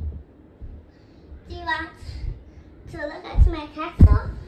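A child's high-pitched voice in two short stretches of indistinct vocalizing, about a second and a half in and again near the end, with a few dull low thumps.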